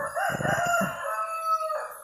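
A single long bird call, wavering at the start and then held on one pitch before stopping near the end.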